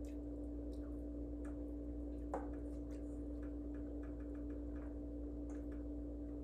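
Light irregular clicks and taps of hands working food in a stainless steel mixing bowl, with one sharper knock a little over two seconds in, over a steady electrical hum.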